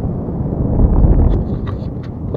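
Wind buffeting the microphone of a camera on a moving bicycle: a loud, low, steady rush with no clear tone.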